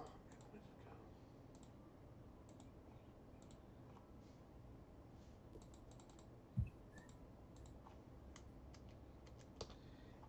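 Faint, scattered computer keyboard keystrokes and clicks, with a single short low thump about two-thirds of the way through.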